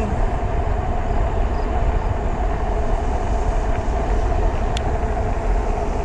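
Wind buffeting the microphone and a steady road-and-drive hum from a 750 W fat-tire e-bike running at about 27 mph under full throttle. There is a single brief click near the end.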